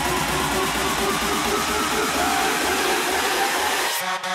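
Electronic dance music build-up: a loud hiss of white noise covers the track, with short rising synth figures under it. The noise cuts off suddenly at the end as the track breaks into a sparser rhythm.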